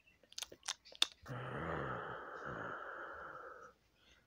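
A few light clicks, then a person's long breathy exhale, like a drawn-out sigh, lasting about two and a half seconds and stopping well before the end.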